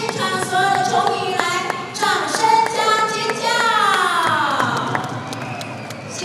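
Music with a singing voice, the notes held and changing every half second or so; about three and a half seconds in, the voice slides down in pitch for over a second.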